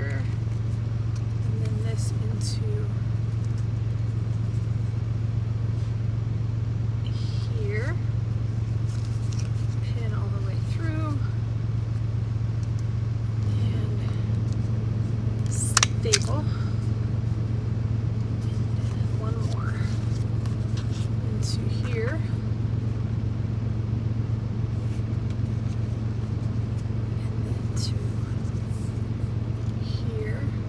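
A steady low hum throughout, with light rustling of paper and fabric being handled. About 16 seconds in, a sharp double click from a stapler fastening a fabric circle to the paper-backed square.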